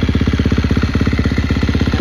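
2017 KTM 350 SX-F's 350cc single-cylinder four-stroke engine idling steadily through an FMF full exhaust with a Megabomb header, a fast, even train of firing pulses.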